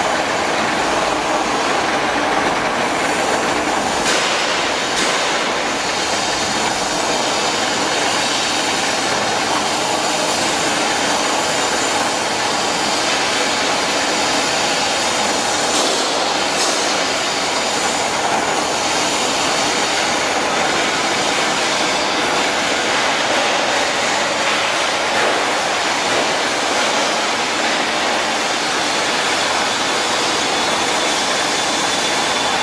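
Steady mechanical running noise of a large lathe turning a long, heavy steel workpiece fitted with big steel rings, a continuous rumble and rattle without a break.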